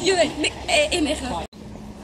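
Short wordless voice sounds, calls and exclamations, that cut off suddenly about one and a half seconds in, followed by quiet outdoor background with a faint low hum.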